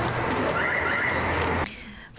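Steady outdoor background noise with a low hum, and a faint high warbling call about half a second in that lasts about half a second; the noise cuts off suddenly near the end.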